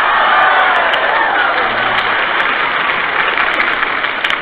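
A large live audience of women laughing and applauding after a joke, with high whoops and shrieks mixed in, heard through the narrow, muffled sound of a 1940s radio broadcast recording.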